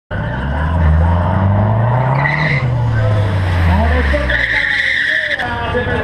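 Mazdaspeed 3's turbocharged four-cylinder engine revving up and back down over about four seconds, with tyre squeal a couple of seconds in and again near the end.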